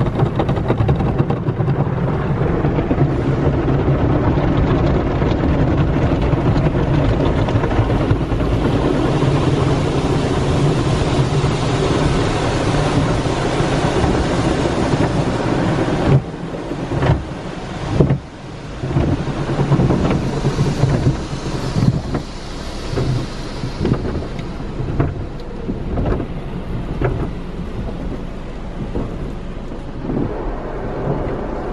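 Automatic car wash heard from inside the car: spinning brushes and water spray drumming on the body and glass in a steady, heavy wash, turning into uneven slaps and surges about halfway through.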